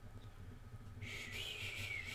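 A soft, breathy whistle on one high pitch, starting about a second in with a slight upward bend and then holding steady.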